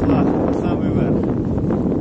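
Strong mountain wind buffeting the microphone in a steady, heavy rumble, with faint voices underneath.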